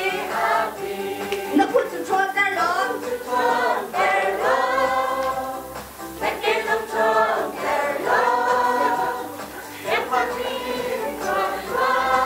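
Church congregation singing a worship song together, many voices holding long notes in phrases of a second or two.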